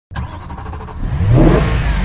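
A vehicle engine revving, swelling louder about a second in with its pitch rising and then falling.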